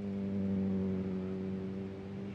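A steady low hum with several overtones, swelling slightly about half a second in.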